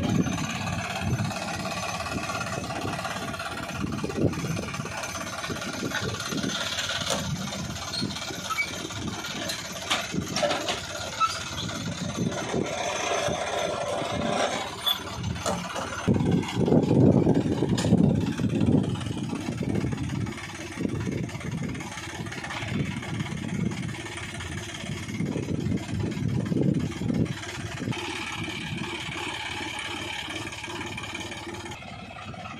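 John Deere 5038 D tractor's diesel engine running under varying load as it drives a borewell pipe-lifting winch, with a few sharp metallic knocks and a louder, rougher stretch past the halfway point.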